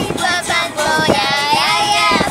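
A girl singing along with a song, her voice carrying held notes that bend up and down over the music.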